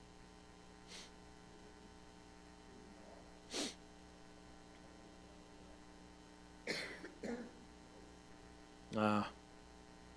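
Quiet room with a steady electrical hum. A faint click comes about a second in and a short breathy burst a few seconds later; near the end a faint, distant voice speaks a few short snatches.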